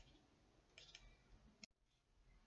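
Near silence: room tone with a few faint, short clicks, a pair about a second in and one more near the end.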